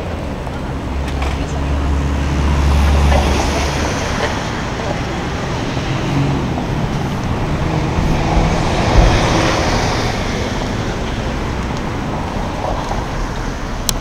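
Urban road traffic noise, with a vehicle passing close by in a low rumble that swells about three seconds in, and a short thump about nine seconds in.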